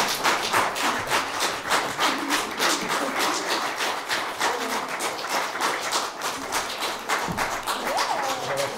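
Audience applause: many hands clapping in a dense, irregular patter that carries on steadily.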